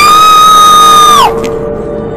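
A loud, high-pitched scream that rises in pitch, holds steady for about a second and breaks off, over a low, sustained drone of eerie music.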